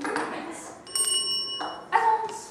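A single bell-like ring with several clear tones that starts suddenly a little under a second in and rings steadily for about a second, with voices around it.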